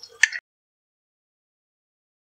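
One sharp click of a metal utensil against a glass jar just after the start, then dead silence for the rest: the audio track cuts out completely.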